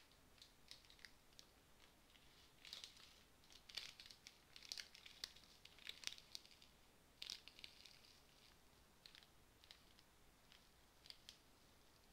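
Near silence broken by faint, irregular crackling clicks, thickest in the middle few seconds.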